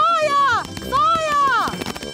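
A high-pitched cartoon voice calls out twice in alarm, each call rising and then falling in pitch.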